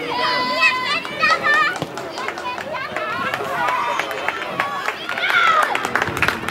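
A group of children talking and calling out over one another, several high-pitched voices at once.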